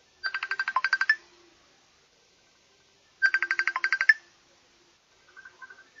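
Phone ringtone: two rings about three seconds apart, each a rapid trill of electronic beeps lasting about a second.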